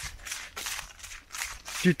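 Running footsteps on snow-dusted leaf litter, a soft crunch repeating about three times a second, mixed with the runner's breathing.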